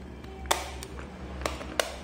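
A screwdriver tip clicking against the plastic case of a digital multimeter while prying at its battery cover: three sharp clicks, the first the loudest.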